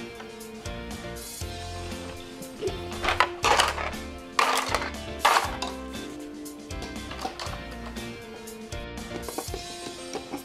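Background music plays throughout, over two loud bursts of plastic clatter about three and about four and a half seconds in. The clatter is a bin of plastic toy train track pieces being tipped out onto a pile.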